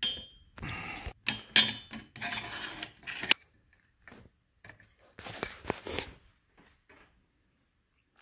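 Metal arm of an Amazon Basics full-motion articulating TV wall mount being handled and swung out, with irregular clinks, rattles and rubbing of its joints. One sharp clank a little over three seconds in, then a few lighter clicks around five to six seconds.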